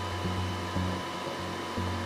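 Steady blower-like whooshing noise in a light aircraft's cockpit, with a low hum underneath.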